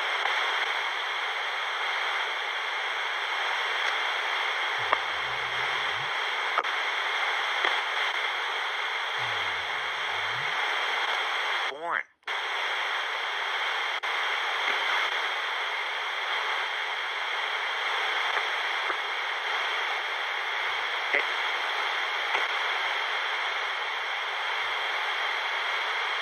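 Sony pocket AM radio used as a spirit box, giving a steady hiss of static as its tuning moves across the AM band. About twelve seconds in the static cuts out for a split second, then resumes.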